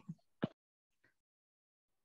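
Near silence. A spoken word trails off at the very start and a brief faint sound comes about half a second in, then there is dead silence for the rest.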